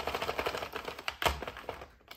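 Sentro plastic knitting machine being hand-cranked, its needles and gears clicking in a rapid run that fades and stops near the end. One louder click comes about a second in, the kind of click the owner puts down to a gear damaged when scrubby yarn jammed in the machine.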